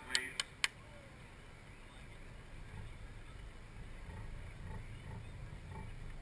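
Wind rumbling on the microphone, with three sharp clicks in the first second.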